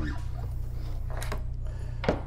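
Handling noise from the brushless motor and its lead wires being turned and moved by hand, with one short sharp click a little over a second in, over a steady low hum.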